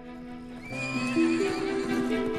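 A horse whinnies, a wavering high call starting about two-thirds of a second in, over background music with long held notes. It is followed by a patter of hoofbeats.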